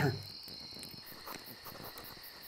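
Crickets chirping faintly in a quiet night ambience: a steady high trill that fades out about halfway through, and a quick, even, high-pitched chirping of about five pulses a second.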